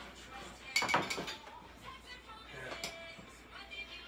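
Kitchenware clinking: a quick cluster of clinks about a second in and another smaller one near the end, as cups and a mixing bowl are handled.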